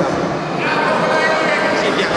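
A man's voice over a public-address system, echoing in a large sports hall, over a steady murmur of crowd chatter.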